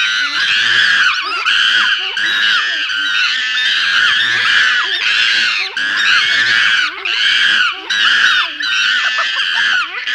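Animated grasshopper creature's voice: a string of high, screeching cries, about two a second, each rising and falling in pitch, made from chimpanzee-, monkey- and rodent-like shrieks.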